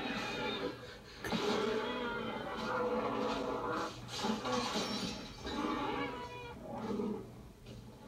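Film soundtrack playing on a TV in the room: a string of drawn-out dinosaur growls and bellows, each a second or two long, from an attack scene.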